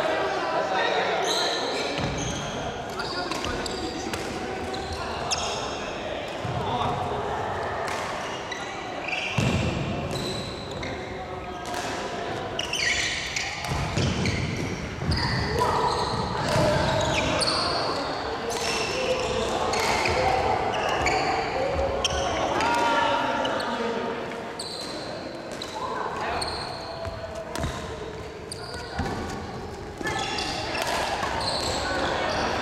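Doubles badminton rally in a large sports hall: rackets strike the shuttlecock with short sharp cracks, and shoes squeak on the wooden court floor as the players move.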